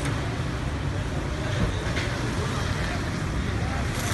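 Steady low rumble of street traffic and market bustle, with no distinct knocks or scrapes.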